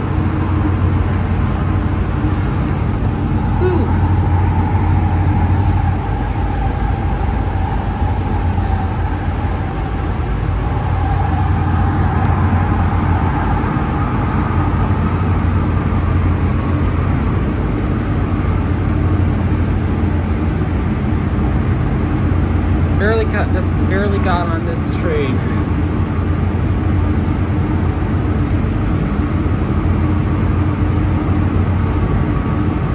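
Interior running noise of a moving Kinkisharyo P3010 light rail car: a steady low rumble of wheels on rail, with a whine holding near one pitch through the first half.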